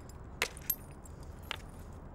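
Flint being knapped: three sharp clicking strikes on flint, two close together and a third about a second later.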